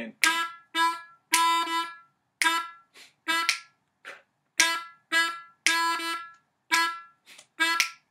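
A diatonic harmonica in A playing a staccato rhythm of short draw notes on the 2 hole (E), each cut off sharply, with one longer held note in each phrase; the same phrase is played twice.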